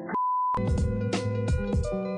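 A single short electronic beep at one steady pitch, then outro music with plucked guitar notes starting about half a second in.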